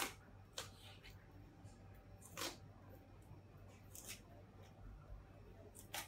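A kitchen knife cutting into a raw cabbage to take out its core: quiet, sparse crisp crunches and snaps of the blade through the dense leaves, about five over the few seconds.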